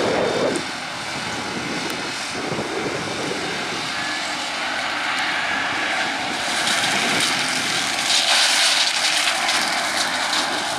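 John Deere 6930's six-cylinder diesel running under load while the McConnel PA65T hedge cutter's spinning flail head cuts into tree branches, a steady machine drone overlaid with the hiss of shredding wood and leaves. The cutting noise grows harsher and louder in the second half, loudest near the end.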